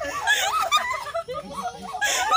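Several people laughing together, their voices overlapping.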